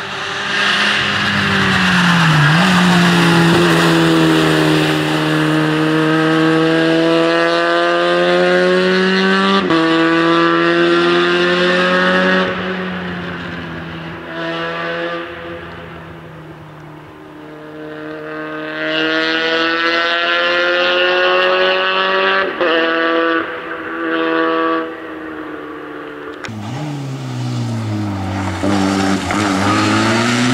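Citroën Saxo rally car's four-cylinder engine driven hard at high revs. Its pitch climbs and drops back at each upshift, with a quieter stretch midway. Near the end the revs fall away as the car slows, then rise again as it accelerates.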